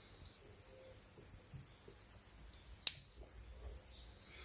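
Side cutters snipping the excess tail off a plastic zip tie on a rubber hose: one sharp snip nearly three seconds in, with faint handling sounds around it.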